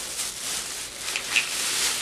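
Plastic shopping bag rustling as it is rummaged through, with a couple of brief crackles.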